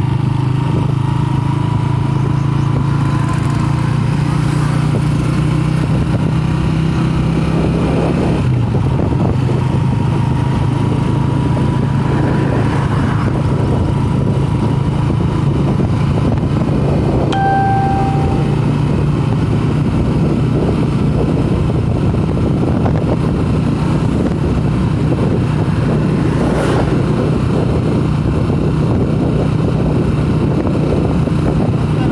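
The engine of the moving vehicle carrying the recorder runs steadily, with wind and road noise over it. A brief high tone sounds a little past halfway.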